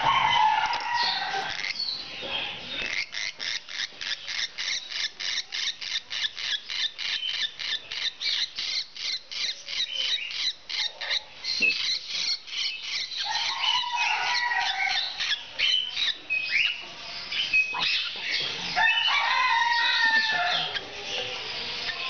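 A restrained parrot screeching in distress, a long run of harsh calls at about four a second, then looser, more varied squawks in the second half.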